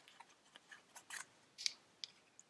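Faint rustles and light taps of card stock being handled and set down on a cutting mat: a few scattered short strokes, the sharpest about a second and a half in.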